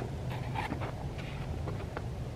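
Quiet, low background rumble with a few faint clicks.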